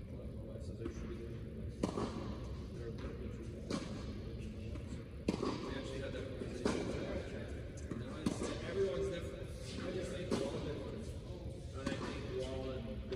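Indistinct talking from a distance, echoing in a large indoor tennis hall, with about six sharp knocks spread through.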